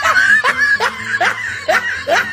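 A person laughing in a run of short giggles, each rising in pitch, about five in two seconds.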